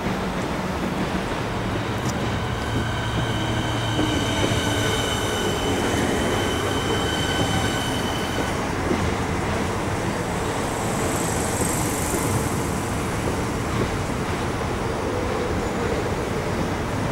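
Electric suburban train running along the platform close by, with wheel-on-rail rumble throughout. For several seconds early on it carries a steady high whine of several tones at once from its motors. A short high hiss comes about three-quarters of the way through.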